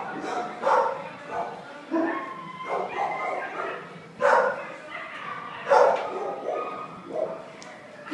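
Dogs barking in shelter kennels: loud single barks every second or so.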